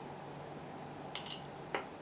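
A few light metallic clicks and clinks from small parts and a screwdriver being handled on a steel workbench, in a short cluster about a second in and once more near the end, over a steady low hum.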